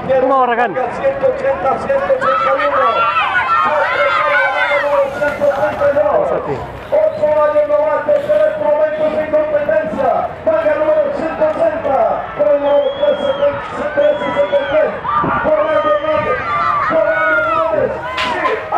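Spectators shouting and cheering on the racers, many voices at once with long drawn-out calls.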